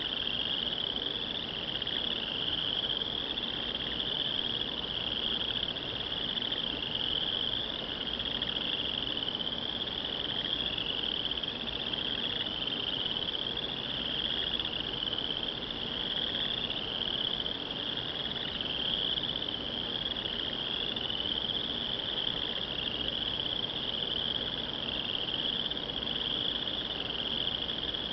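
A steady, high-pitched chorus of calling insects, pulsing in short rising sweeps a little more than once a second.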